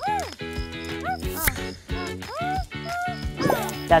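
Cartoon character voice effect for a talking box: a string of short, chattering calls, each rising and falling in pitch, over light background music.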